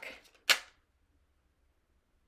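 A single sharp snap of a tarot deck being shuffled by hand, about half a second in.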